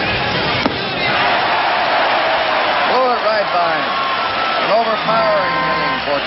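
Baseball stadium sound from an old game broadcast: a single sharp impact as the pitch reaches the plate, then crowd noise that swells about a second in, with voices calling through it.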